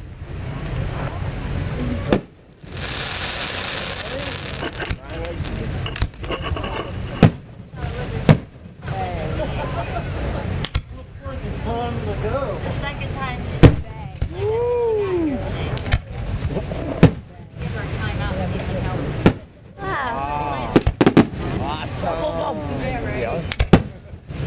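Aerial fireworks shells bursting with sharp bangs every few seconds, the loudest about halfway through, over the talk of spectators.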